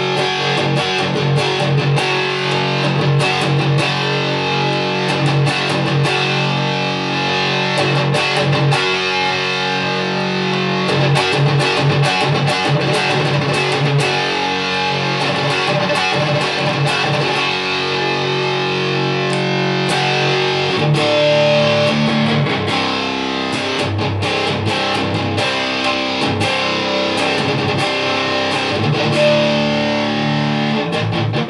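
Epiphone G400 Custom three-pickup SG electric guitar played through an amp's distorted channel: fast-picked riffs over held low notes, with the riff changing about two-thirds of the way through.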